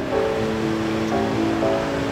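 Soft background music with long held notes that change every half second or so.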